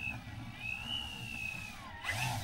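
Large radio-controlled Extreme Flight Bushmaster airplane taxiing on the ground at low throttle, its motor giving a thin, quiet whine that rises slightly about halfway through and drops near the end.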